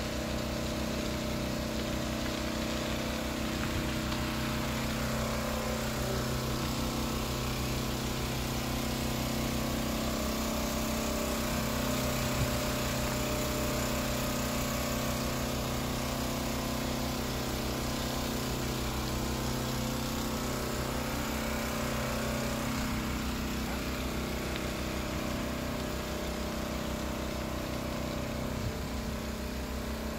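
An engine running steadily at one speed throughout.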